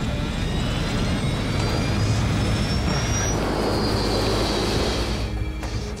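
Jet airliner engines spooling up to maximum thrust for a go-around, with a low rumble and a whine rising in pitch over the first three seconds. Dramatic music plays underneath.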